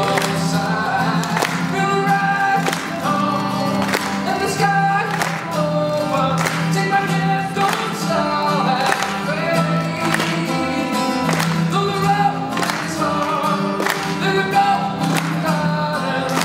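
Live unplugged performance: male voices singing a pop song to a strummed Gibson acoustic guitar, with steady strokes about twice a second.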